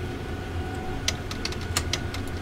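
Sewing machine clicking lightly as it is cycled through a stitch to draw up the bobbin thread, several small clicks in the second half over a steady low hum.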